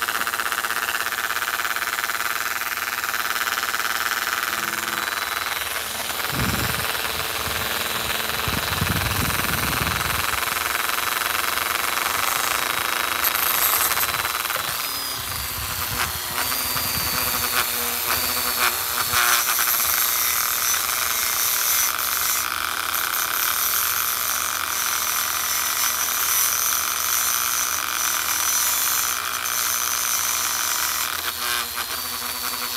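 Handheld rotary tool running steadily with a high whine, its small bit working a white copper ring. There are scattered short clicks and scrapes around the middle.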